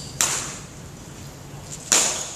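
Two badminton racket strikes on a shuttlecock, crisp smacks about a second and a half apart: one near the start and one near the end. Each rings briefly in a large hall.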